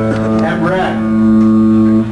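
A single electric guitar note or chord held and ringing out steadily, growing a little louder toward the end, with voices talking over it in the first second.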